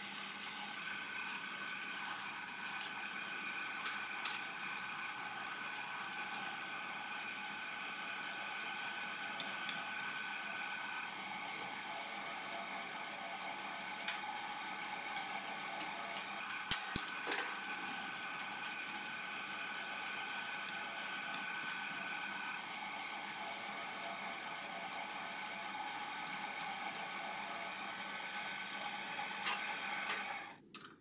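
Mini lathe running steadily, its motor and drive giving a steady whine, while a turning tool cuts brass rod. A few sharp ticks are scattered through it.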